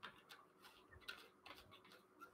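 Near silence with a few faint, irregular clicks.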